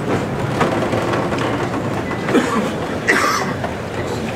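Steady murmur and shuffling of a dense street crowd, with brief voices rising about two and three seconds in.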